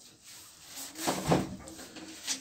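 Marker pen rubbing across a whiteboard in a few short strokes, the loudest about a second in.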